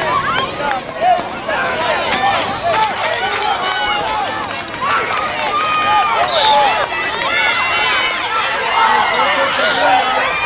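Many voices shouting and yelling over one another, several of them high-pitched, with no clear words: a sideline crowd and players calling out during a youth flag football run.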